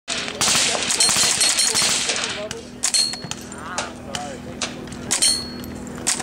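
Integrally suppressed .22 LR semi-auto rifle (S&W M&P 15-22 with a one-piece billet-core integral silencer) firing high-velocity ammunition: a quick string of muffled reports in the first two seconds, then a few spaced shots. Several shots are followed by a brief ringing ping of steel targets being hit.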